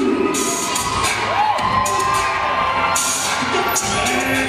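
Crowd cheering and shouting over loud music, the cheering swelling twice.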